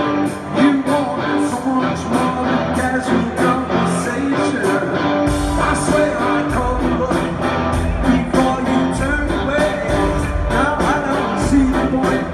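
Live rock band playing in an arena, with lead vocals, electric guitars, bass and a steady drum beat; the deep low end comes in about five seconds in. Recorded from the audience, so the sound is roomy and loud.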